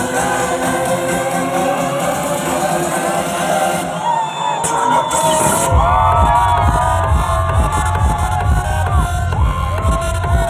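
Live electronic dance music played loud through a concert sound system and heard from within the crowd. The bass drops out for a moment, then a heavy, regular bass beat kicks in about six seconds in, while the crowd cheers and whoops.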